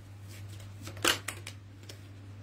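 Tarot cards being handled as a card is drawn from the deck: a few soft card snaps about halfway through, over a low steady hum.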